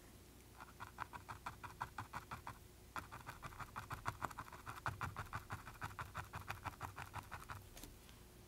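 A paintbrush working acrylic paint onto canvas in quick short scratchy strokes, about five or six a second, laying on white fuzz. The strokes come in two runs with a brief pause about three seconds in.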